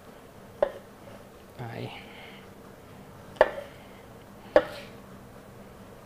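Chef's knife cutting button mushrooms on a plastic cutting board: three sharp knocks of the blade striking the board, spaced a few seconds apart.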